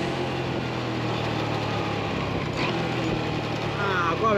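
Motor scooter engine running with a steady hum.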